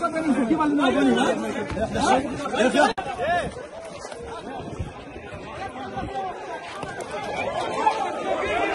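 Several people's voices calling out at once, overlapping in a confused mix; loudest in the first three seconds, then quieter and more distant.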